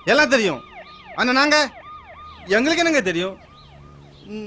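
Man speaking loudly in short bursts over a faint siren in the background, its pitch rising and falling in quick, repeated sweeps.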